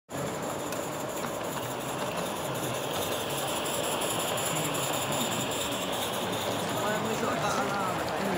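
Accucraft live-steam model of the Talyllyn locomotive Dolgoch running along the track with its coaches, giving a steady hiss of steam; voices talk in the background near the end.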